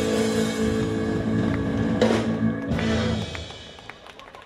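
Live band of trumpet, saxophone, electric guitar, bass guitar and drum kit holding a final chord, with a sharp drum hit about two seconds in. The music stops just after three seconds, ending the song.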